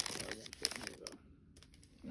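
Foil wrapper of a trading-card pack crinkling as it is opened and the stack of cards pulled out, with sharp crackles and clicks in the first second, then a few light clicks.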